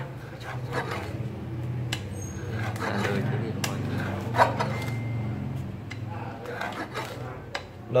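Blade of a lever-arm guillotine herb cutter coming down through a Phellinus mushroom. It makes a handful of separate sharp cuts a second or more apart, over a low steady hum.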